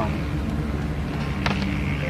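Steady low engine hum over street noise, with a single sharp click about one and a half seconds in.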